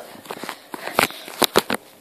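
A few sharp clicks and knocks: one about halfway through, then three in quick succession just after, over faint room noise.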